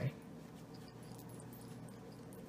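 Faint steady low hum of room tone, with no distinct event.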